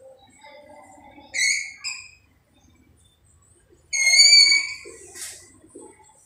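Chalk squeaking on a blackboard while letters are written: two short high squeaks about a second and a half in, then a louder, longer squeal around four seconds in.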